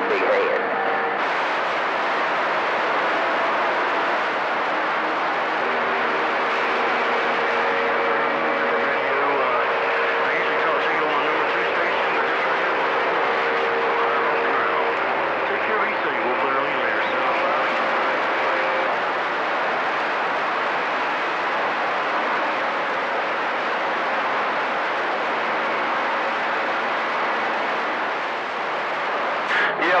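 CB radio receiver on channel 28 putting out steady static and hiss, with faint, unintelligible voices and steady whistling tones from weak distant skip signals buried in the noise.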